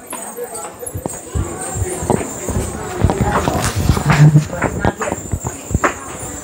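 Footsteps on a hard hallway floor, a loose run of uneven clicks and knocks, with faint talking in the background.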